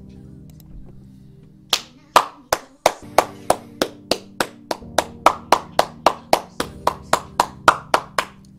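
One person clapping his hands steadily, about four claps a second, starting a couple of seconds in, over quieter music holding a steady chord.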